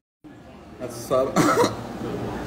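After a brief dead silence, a man's voice says "Guys" and gives a short cough.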